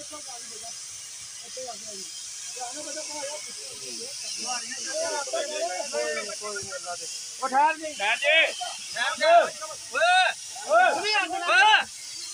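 Gas cutting torch hissing steadily as it cuts through steel. Loud men's voices break in over the hiss in the second half.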